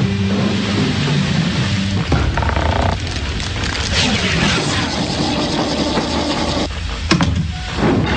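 Closing music held on low notes for the first couple of seconds, then the rushing and clanking of heavy sliding doors opening one after another, with sharp metallic clanks near the end.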